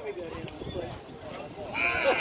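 Indistinct voices of people at the field talking and calling out, with a louder shout near the end.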